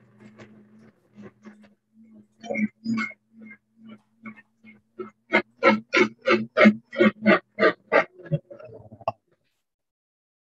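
Countertop blender running, blending apple porridge: a steady low motor hum with choppy pulses on top, about three a second in the second half, cutting off suddenly about nine seconds in.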